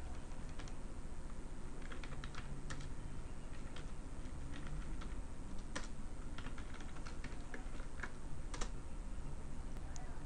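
Computer keyboard typing: irregular keystroke clicks as short commands are entered, with a couple of louder clicks past the middle, over a faint steady low hum.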